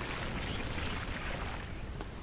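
Steady rushing ambient noise with a low rumble, from the anime episode's soundtrack.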